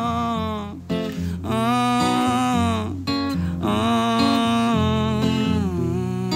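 Strummed acoustic guitar in the closing bars of a song, with a man's voice holding long wordless notes over it in about three phrases.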